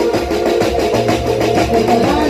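Live garba band music: a melody on keyboard over a steady beat from dhol and drums.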